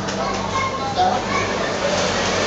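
Children's voices and chatter in short, scattered bursts, over a steady low hum.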